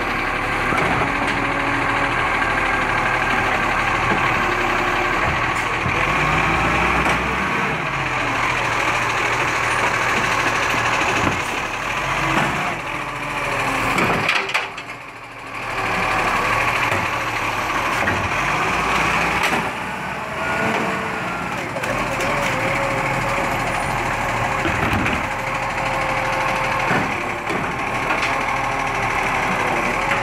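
Side-loader garbage truck working its hydraulic bin-lift arm: the engine runs and revs with a rising and falling whine as wheelie bins are lifted and tipped into the hopper, with a few knocks of the bins and arm. The sound drops away briefly about halfway through.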